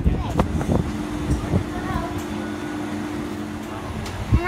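A steady mechanical hum holding two even tones, starting about half a second in and cutting off just before the end, under brief bits of nearby voices and street noise.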